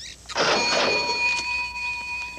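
Whirring mechanism with a steady high whine, like an automatic teller machine's motor running. It starts with a short rush of noise and cuts off just before the end.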